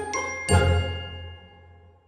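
Short end-screen jingle: chiming, bell-like notes over a low bass, the last chord struck about half a second in and ringing away to near silence by the end.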